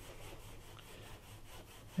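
A foam sponge brayer rolling back and forth over paper: a faint, steady rubbing.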